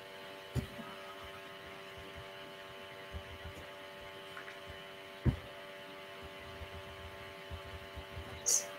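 Faint steady electrical hum made of several constant tones, with a few short low thumps. The clearest thumps come about half a second in and about five seconds in.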